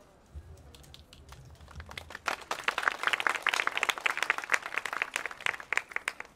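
Crowd applause: many hands clapping, building about two seconds in and thinning out near the end.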